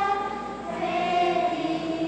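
Children's choir singing sustained notes: one note held and fading, then a new note starting about two-thirds of a second in and held.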